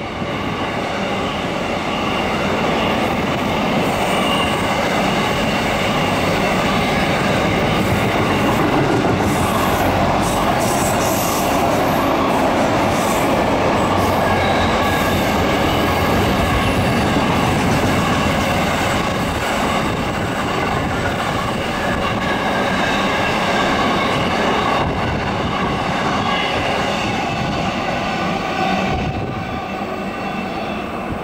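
Container freight train wagons rolling past on the rails, a steady loud rumble with thin steady wheel squeal from the curve. The sound eases a little after the last wagons pass, about two-thirds of the way in.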